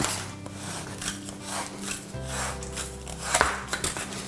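Black plastic drain pipe being cut with a red twist-style plastic pipe cutter: the blade scrapes through the pipe wall in several rasping strokes as the cutter is turned around it. Background music plays underneath.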